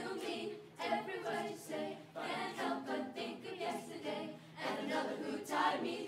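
Mixed-voice youth choir singing a cappella, several voice parts in close harmony with phrases that swell and dip.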